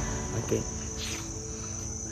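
Steady high-pitched insect trill, like crickets or cicadas, running without a break, with soft background music underneath.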